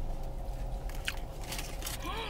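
Someone biting into and chewing crisp batter-fried sweet potato, with several sharp crunches, most of them in the second half.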